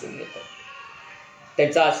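A short pause in spoken narration with only a faint, wavering high-pitched tone beneath it, then the narrating voice resumes about one and a half seconds in.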